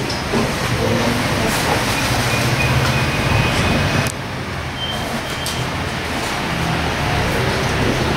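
Steady background rumble with a hiss over it; the hiss drops away abruptly about four seconds in.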